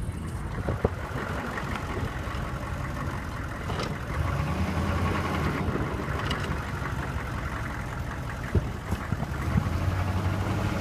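A GMC Sierra 2500 plow truck's diesel engine running as the truck moves, heard outside the cab window. The engine gets louder about four seconds in. Its turbo is in the sound, which the owner says has something the matter with it, and there are a few sharp clicks.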